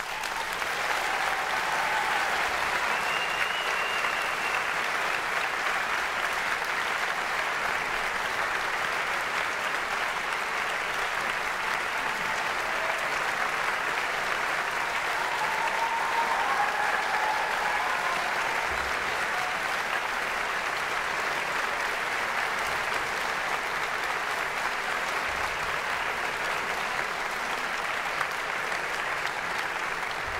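Large concert audience applauding: the clapping breaks out all at once and holds steady and dense throughout, with a few faint voices rising briefly above it.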